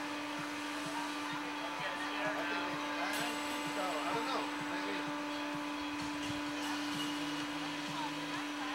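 Steady electric hum from the slingshot ride's machinery as the capsule waits for launch, with faint voices in the background.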